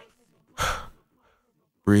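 A single short breath from a male vocalist about half a second in, in a break where the backing music has stopped; a man's voice begins speaking right at the end.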